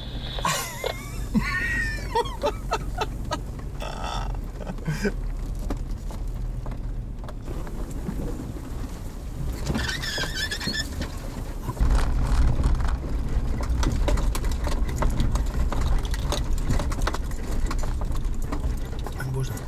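A 4x4 driving slowly over a rough dirt track, heard from inside: low engine and road rumble with frequent small rattles and knocks from the body, and a few brief high squeaks near the start and about ten seconds in. The rumble gets louder about twelve seconds in.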